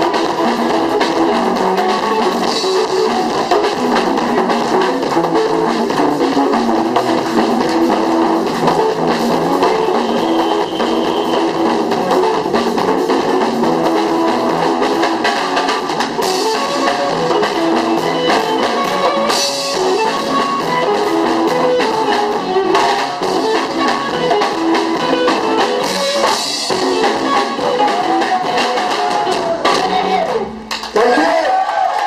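A live band playing: guitar over a drum kit, with congas struck by hand.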